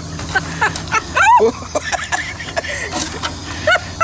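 People laughing and exclaiming in short bursts, over a steady low hum.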